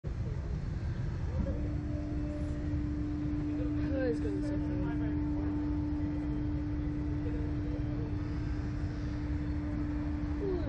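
Slingshot reverse-bungee ride's machinery humming steadily, starting about a second and a half in, over a constant low rumble.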